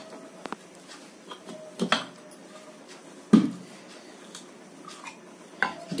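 Steel bearing puller turned by hand with its tommy bar to draw a worn bearing out of a ceiling fan housing: sharp metal clinks about once every second and a half, some with a brief ringing after them.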